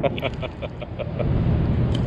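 Steady low rumble of road traffic crossing the highway bridge overhead.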